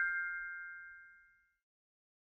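Chime sound effect of a channel logo sting: a single bright ding ringing out and fading away within about a second and a half.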